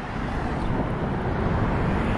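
Steady rumble of road traffic, growing a little louder toward the end.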